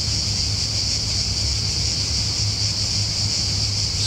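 Chorus of cicadas in pine trees, a steady high-pitched buzz that does not let up, over a low steady hum.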